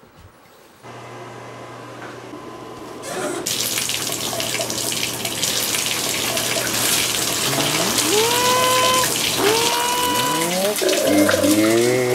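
Water running hard from a tap, a loud rushing hiss that starts abruptly about three seconds in over a steady low hum. In the last few seconds, rising gliding tones come in over it.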